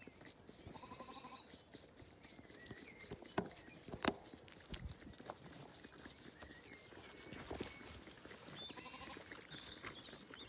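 Zwartbles lambs feeding from bottles, with faint suckling and rustling close to the ground. A faint bleat comes about a second in and another near the end, and a few sharp clicks fall around the middle.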